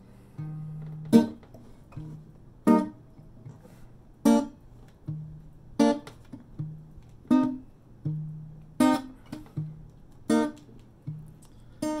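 Acoustic guitar with a capo played solo in an alternating pattern: a low bass note, then a sharp strummed chord, the chord strokes coming about every second and a half. It is the instrumental lead-in before the vocal.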